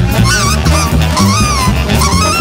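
Live jazz big band playing: a double bass walks steadily underneath while saxophones and brass play wavering, honking high lines over it.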